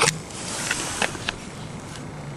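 Steady background hiss with a few faint clicks in the first second and a half.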